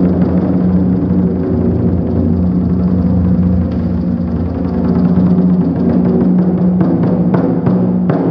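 Japanese taiko drums (wadaiko) played by an ensemble in a dense, continuous pattern of strokes. Near the end, separate sharp strikes stand out, a fraction of a second apart.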